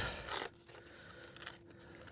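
Brief scraping and rustling from handling the battery and battery compartment of an RC model jet, mostly in the first half second.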